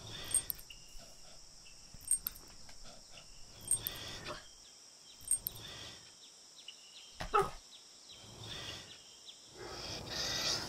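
Dog sniffing: short breathy sniffs in bursts about every one and a half seconds, over a steady high hiss.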